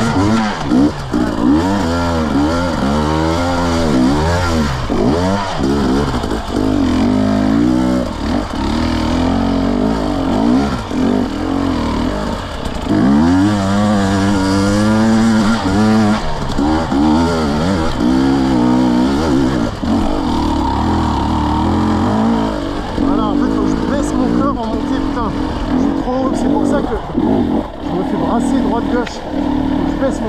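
KTM 250 EXC two-stroke enduro motorcycle engine revving up and down over and over, its pitch rising and falling every second or so as the throttle is worked, with a few steadier stretches.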